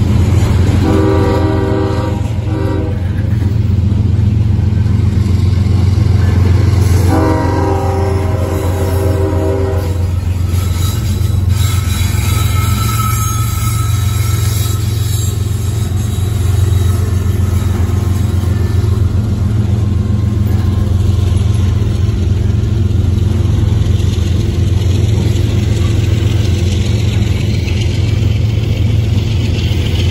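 CSX freight trains passing close by at a grade crossing, a loud steady rumble of wheels and cars on the rails. A locomotive horn sounds twice, about a second in and again about seven seconds in, each blast lasting two to three seconds.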